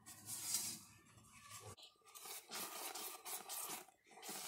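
Wooden spoon stirring a thick brigadeiro mixture in a stainless steel saucepan, faint irregular scrapes against the pot.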